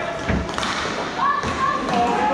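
Two dull thuds about a second apart from inline hockey play, with players' voices calling out over them.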